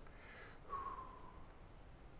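Quiet room tone with a short breath through the nose close to the microphone, then a brief, slightly falling squeak about a second in.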